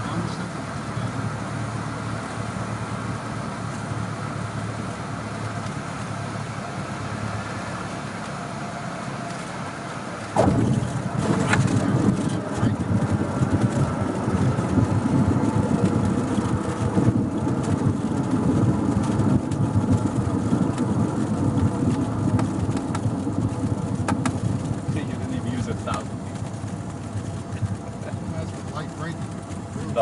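Cessna 172's piston engine and propeller running at low power in the cockpit on short final. About ten seconds in the wheels touch down and the sound turns suddenly louder and rougher: tyres rumbling along the paved runway through the landing roll.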